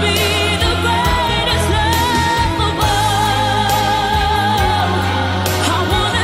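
A pop love song plays with a voice singing a melody, holding one long wavering note in the middle, over a steady bass and beat.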